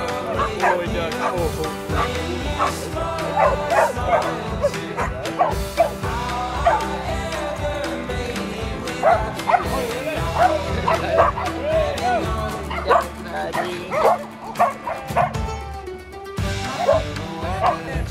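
Dogs barking and yipping repeatedly in short calls over background music, which drops out briefly near the end.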